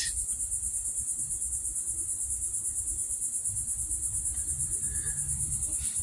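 Insects trilling in a high, steady chorus that pulses rapidly and evenly, several beats a second.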